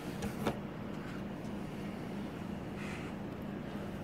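Steady low machine hum, with a few faint clicks about half a second in.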